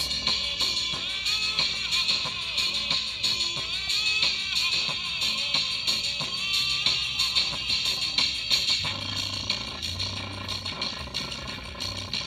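Music with a steady beat played at full power through a tiny bare 3-watt speaker driver that is being overdriven to blow it out; it sounds horrible, and low bass notes come in about nine seconds in. The driver is running hot but has not yet failed.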